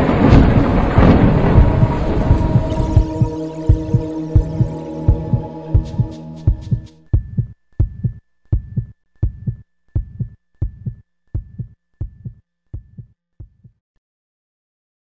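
Intro soundtrack: a loud sustained chord fades away over the first several seconds, under a regular low beat of thuds about two a second. With each thud comes a faint high tone, and the beat grows quieter until it stops just before the end.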